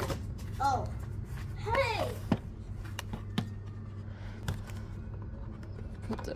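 A child's short vocal sounds, twice in the first two seconds. Then several light clicks and taps from a plastic volcano mould and its liner being handled, over a steady low hum.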